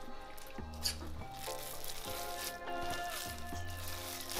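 Instrumental background music with held bass notes, over a few faint clicks of a fork against the bowl as egg is mixed into the rice-and-cheese dough.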